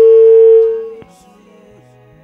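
Gospel singing: a voice holding one long, steady note that breaks off about a second in, leaving only faint low music.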